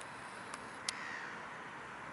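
A single short, faint bird call about a second in, just after a sharp click, over steady outdoor background noise.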